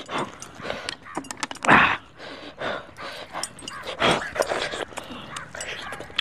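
Mouth sounds of someone eating mutton on the bone by hand: irregular slurps, sucks and breathy puffs as the meat and marrow are worked at, with one louder burst about two seconds in.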